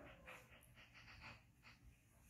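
Near silence, with a string of faint soft clicks and breathing from a baby monkey lying with its fingers at its mouth.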